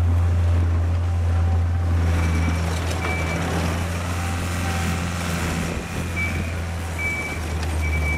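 Takeuchi TL130 compact track loader's diesel engine running steadily as the machine turns on gravel, its tracks grinding over the stones. Short high beeps sound several times, mostly in the second half.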